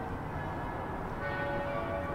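Church bells ringing, their tones growing stronger about a second in, over a low rumble of street noise.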